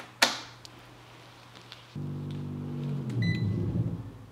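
A sharp click as a crocodile-clip test lead snaps onto a battery terminal. About two seconds later a steady low hum starts, and a short high electronic beep sounds a little after it.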